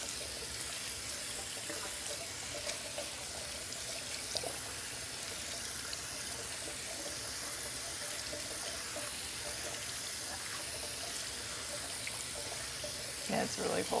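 Water running steadily from a bathroom sink tap into the basin.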